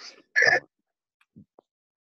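A man briefly clears his throat about half a second in, heard through a video-call connection that cuts to silence around it.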